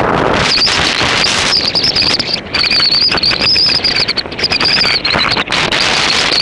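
Wind rushing and buffeting over the microphone of a moving bicycle. A high, wavering whistle-like tone comes and goes through it.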